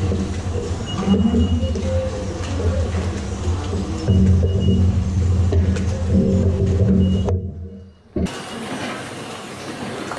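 Steady low droning hum that swells and eases in places, fades out about seven seconds in, then returns quieter after a short gap.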